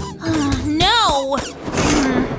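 A high, wordless vocal whine, about a second long, that rises and then falls in pitch.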